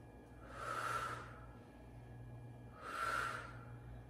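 A woman's forceful breathing during a resistance-band tricep press: two airy exhales about two seconds apart, in time with the repetitions.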